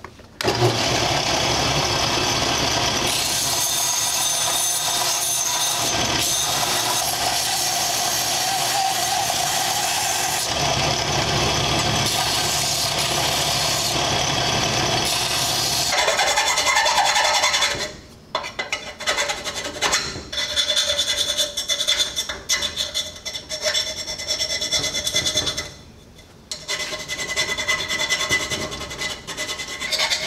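A stationary power grinder running steadily as the end of a steel rectangular tube is ground on it, cutting off a little past halfway. Then come irregular scraping strokes of hand-filing the tube clamped in a bench vise.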